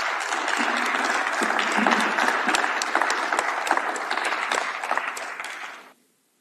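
An audience applauding: a dense, steady run of many hands clapping together, which fades and stops just before the end.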